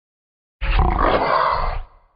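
A loud, rough roar-like growl that starts suddenly about half a second in and cuts off after a little over a second.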